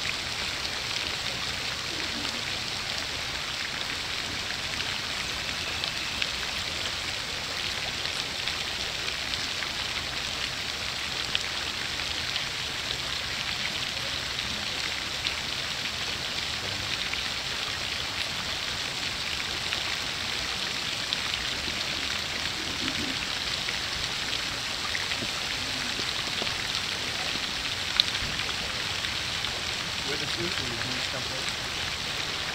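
Steady splashing hiss of a pond fountain's spray falling back onto the water, with a few faint ticks, the sharpest near the end.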